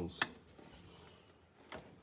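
Two sharp clicks close together at the start and a fainter knock near the end, from a hand working at the Massey Ferguson 175's brake pedals, with low quiet in between.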